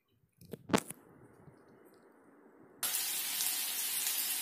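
Chopped ginger and garlic sizzling in hot oil in a kadai; the steady sizzle starts suddenly about three seconds in. Before it, a few sharp knocks sound about a second in.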